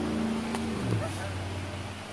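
Motorboat engine running steadily on the lake, its pitch dropping about a second in and carrying on lower and fainter.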